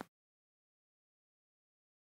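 Digital silence: a gap in the edited soundtrack with no sound at all.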